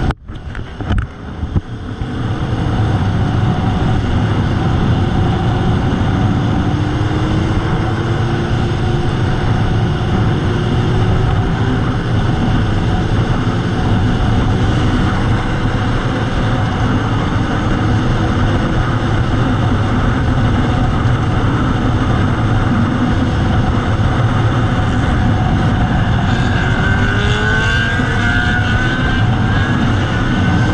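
Motorcycle engine running while riding, heard from an onboard camera, with heavy wind rush; the engine note glides slowly up and down as the revs change. The sound drops out at the start and builds back up within about two seconds, and near the end rising engine notes are heard as the revs climb.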